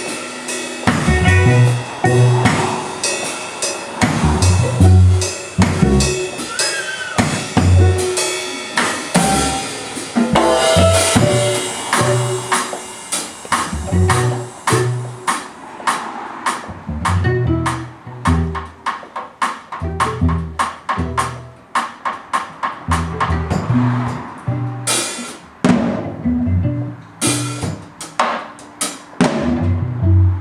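Live instrumental trio of violin, cello and drum kit playing, with busy, rapid drum strokes over low sustained cello notes.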